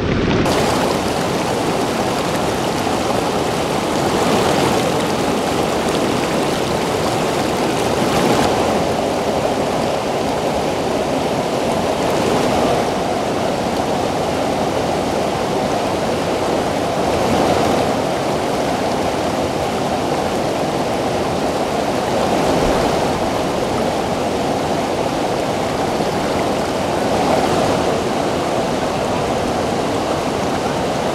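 Fast mountain river rushing over rocks, a steady rush of white water that swells a little every four to five seconds.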